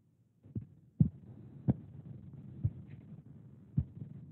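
Faint background noise through a video call's open microphone, which cuts in about half a second in, with about five irregular low thumps.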